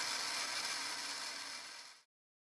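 Clean water rushing through a Valterra Sewer Solution water-jet pump and its discharge hose during a flush: a steady hiss that fades out toward the end.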